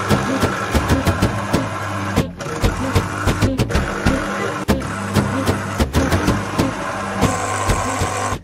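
Electric citrus juicer's motor running as an orange half is pressed down onto its spinning reamer: a steady hum with scattered clicks and knocks.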